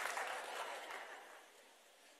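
Faint applause from an audience, fading away within about a second.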